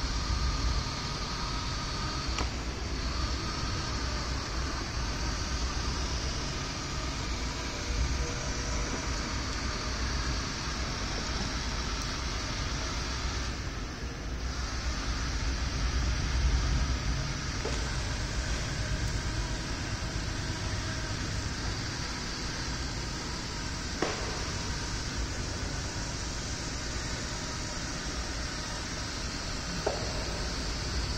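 Motor-driven paddle wheels of a small robot boat churning pool water: a steady splashing hiss over a low hum, with a few faint clicks.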